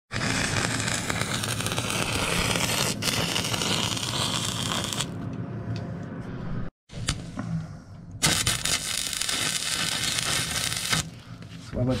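Electric arc welding on a steel trailer side wall, fixing a bracket in place: the arc crackles and sizzles steadily for about five seconds, then after a short break a second weld runs for about three seconds.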